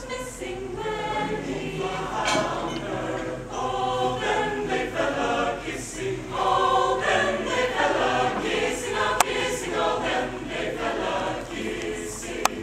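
Mixed choir of men's and women's voices singing together, with a single sharp click about nine seconds in.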